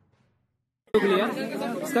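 Only speech: near silence, then about a second in a man's voice starts abruptly, with crowd chatter behind.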